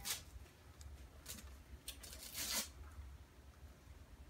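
Gift-wrapping paper on a box rustling and tearing in a few short bursts as a small child picks at it, the longest burst a little past halfway.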